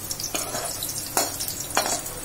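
Shallots, garlic cloves and green chillies sizzling in a kadai while a spatula stirs them. The spatula scrapes loudly against the pan three times.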